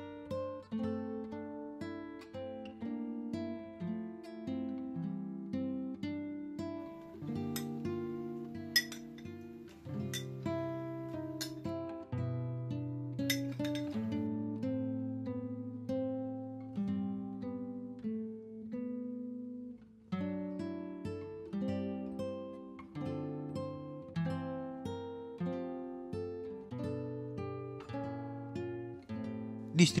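Background music: acoustic guitar playing a plucked melody over chords, note after note fading away.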